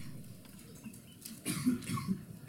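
A person coughing briefly in a quiet room, about one and a half seconds in.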